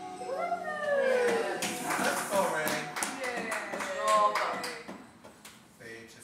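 People's voices in drawn-out cries that fall in pitch, with a quick run of sharp clicks from about a second and a half in; it quietens near the end.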